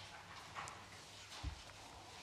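Quiet room tone with faint handling noise of a laptop and book being moved on a table, and a single dull thump about one and a half seconds in.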